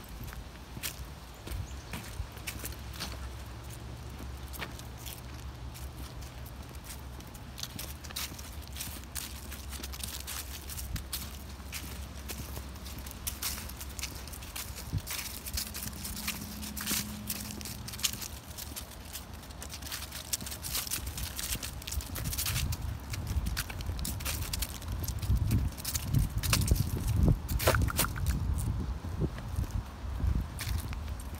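Footsteps of walking shoes on a dirt path scattered with dry leaves and twigs, a steady run of short scuffs and crackles. Louder low bumps come in over the last several seconds.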